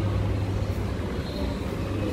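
A steady low hum under an even background hiss.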